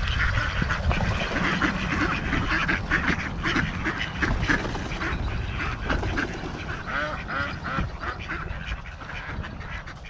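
A flock of mallard ducks quacking, many short calls overlapping, gradually fading out toward the end.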